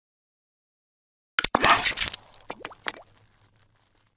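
Logo-intro sound effects: after a silent start, a quick run of sharp clicks and a short noisy rush about one and a half seconds in, then four fainter clicks that die away by about three seconds.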